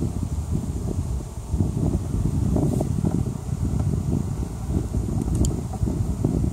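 Low, uneven rumble of wind and handling noise on a phone microphone, with a few faint clicks.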